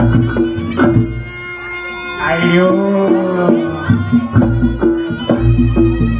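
Reog Ponorogo gamelan accompaniment: hand-drum strokes and deep gong booms under a steady, held reedy wind melody. The drumming drops out from about two to four seconds in while a pitched line rises and falls, then the beat comes back.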